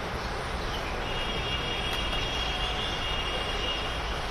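Steady outdoor background noise with a low rumble, and from about a second in a thin, steady high-pitched tone above it.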